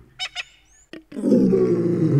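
A few short high chirps, then a deep wild-animal call of about a second whose pitch falls away at the end.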